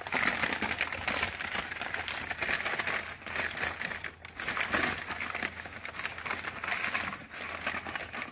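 Crumpled brown kraft packing paper crackling and rustling as it is pulled from a box and unwrapped by hand, with short lulls about three and four seconds in.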